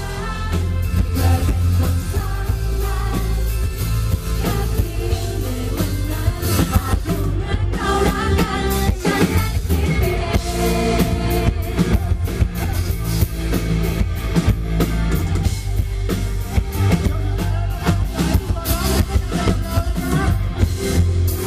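A live band with drums and guitar plays a Thai pop song while a woman and a man sing it as a duet.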